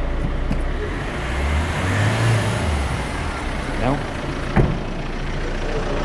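Car engine running at low revs over a steady low rumble. Its pitch rises and falls once around the middle, and there is a single sharp knock near the end.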